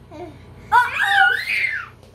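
A small child's high-pitched squeal in play, about a second long, its pitch rising and falling, after a short low vocal sound near the start.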